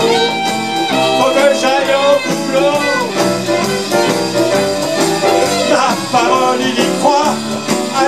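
Live boogie-jazz band playing an instrumental passage: saxophone lines over keyboard, bass, drums and congas.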